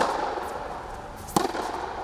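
Tennis balls struck by rackets in a rally: two sharp hits about a second and a half apart, each ringing briefly in the covered indoor hall.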